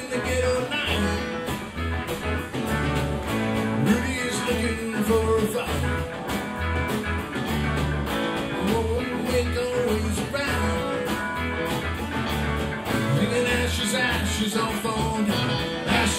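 Live rock band playing an instrumental stretch of a song: electric guitars over a pulsing bass line and drums with cymbals.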